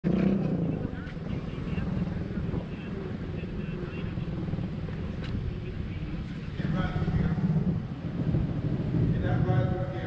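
Motorcycle engine running steadily at low speed as the bike rolls along, with a person talking briefly around the middle and again near the end.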